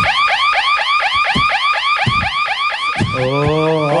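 An electronic alarm tone warbling in quick, repeated up-and-down sweeps, about five a second, that stops about three seconds in. A man's drawn-out "oh" follows.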